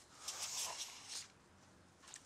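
A brief soft rustle lasting about a second, then near silence.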